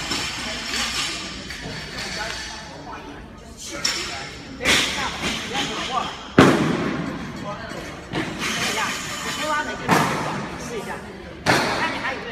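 Voices talking in a large, echoing gym hall, broken by four heavy thuds a second or more apart, the second one the loudest, each followed by a short ring of echo.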